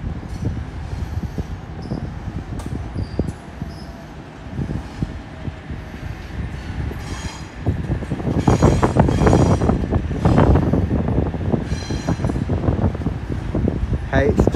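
Double-deck electric passenger train running past on a nearby track, a low rumble that grows louder about halfway through, with wheels clattering over rail joints and points and short spells of high wheel squeal.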